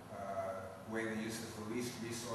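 Only speech: a man talking in a room.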